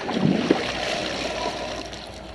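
Water pouring and splashing out of a pool vacuum's debris bag as the vacuum head is lifted out of the pool, fading toward the end.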